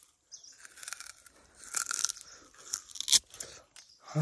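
Sugarcane being bitten, torn and chewed: irregular crunches and cracks, with a sharp crack about three seconds in.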